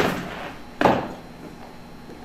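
A person slamming into a metal-framed glass exit door: one sharp, loud bang a little under a second in.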